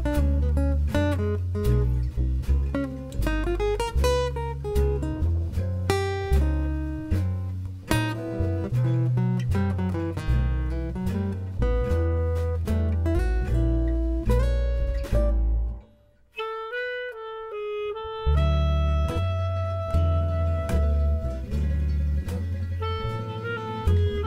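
Gypsy jazz band playing live: acoustic guitars, clarinet, upright double bass and drums, with a guitar lead at first. About sixteen seconds in, the band stops dead for a moment, then comes back in with long held notes.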